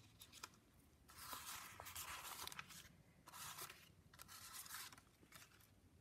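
Sheets of paper rustling faintly as they are handled and leafed through, in a few short spells, the longest about a second and a half.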